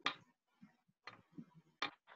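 A few faint, short clicks: a sharp one at the start, some weaker ones in the middle and another sharp one near the end, heard over a video-call connection.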